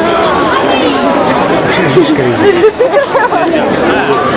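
Crowd chatter: several people talking at once close by, with one nearer voice standing out around the middle.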